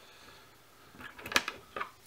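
A few short, sharp clicks and taps as small tools and materials are handled at a fly-tying bench, starting about a second in, the loudest a little after halfway.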